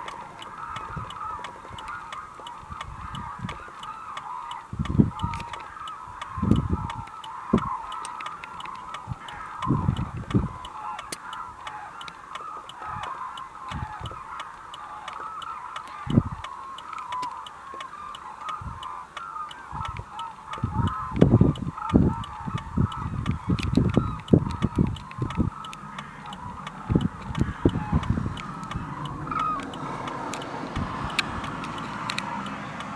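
A large flock of hooded cranes calling all at once: a steady, dense chorus of honking calls with no pause. Irregular low rumbles break in now and then, most of them about 21 to 25 seconds in.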